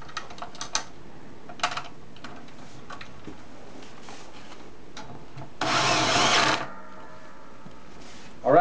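A cordless drill runs for about a second, driving a hinge bolt into the wooden futon arm, a little over halfway through. Before it come a few light clicks of metal hardware being handled.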